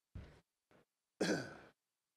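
Speech: a man's voice says a single word, "stage", about a second in, breathy and loud. A brief low sound comes just after the start, with dead silence between the sounds.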